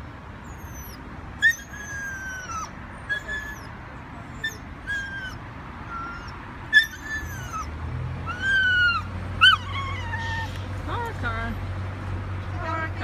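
A puppy whining and yipping: a string of short, high, falling whines and yelps, some drawn out, spread through the whole stretch. A low steady engine drone comes in about two-thirds of the way through.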